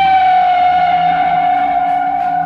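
Loud electric guitar feedback: one sustained tone with a stack of overtones, sagging slightly in pitch.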